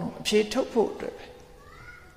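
A man speaking in a sermon for about a second, followed near the end by a faint, short, high gliding sound.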